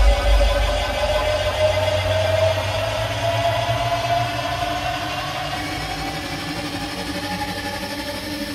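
Electronic music played loud through a JBL PartyBox 310 party speaker and picked up by a microphone in the room: heavy bass fades out about a second in, leaving a sustained synth drone that slowly rises in pitch, like a build-up between sections of the track.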